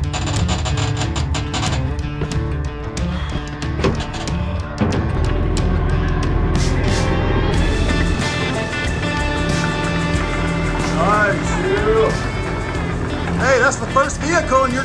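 Background music with a steady beat, with a singing voice coming in near the end.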